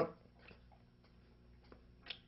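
Near silence, with a few faint ticks about half a second in and near the end.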